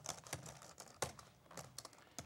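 Typing on a laptop keyboard: faint, quick, irregular key clicks, with one sharper click about a second in.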